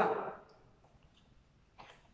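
A woman's short exclaimed word, fading out within the first half second, then a quiet room, and a brief rustle of paper picture cards being handled near the end.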